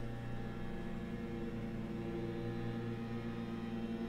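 Leaf blowers droning steadily, an even engine hum with no change in pitch.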